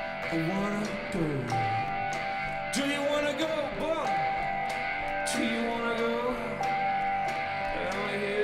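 Live band music: guitar and held instrumental tones under a man's sung melody line, with a few sharp percussion hits.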